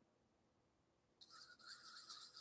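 Near silence, then from about a second in a faint scratchy scraping: a wooden stir stick rubbing around the bottom of a small paper cup, working sprayed floating silver paint so its propellant soaks into the paper.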